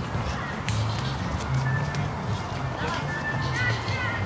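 Jazz band playing, its bass line heard most plainly as a run of changing low notes, with a few short bird chirps over it in the second half.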